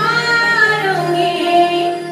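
Desia Dhemsa folk song from Koraput: a high female voice sings a melody of sliding and held notes over the accompanying music.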